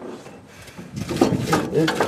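Faint scraping and rubbing from a rusted hoist brake on a Northwest 80-D crane as the brake is let off. The brake is frozen, stuck to the drum, so the drum does not go down. A man's voice comes in about a second in.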